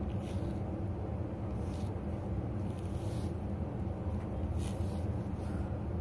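A steady low rumble runs under a few brief, faint scratchy rustles, about every two seconds, as a hand brush is worked through fursuit fur and the fur is cleaned out of it.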